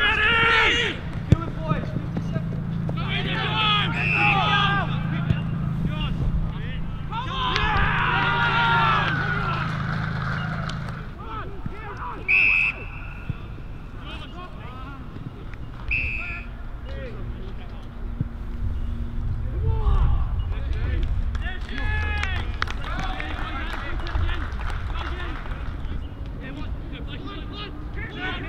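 Players shouting and calling to each other during an Australian rules football match. An umpire's whistle is blown twice near the middle, the first blast longer than the second.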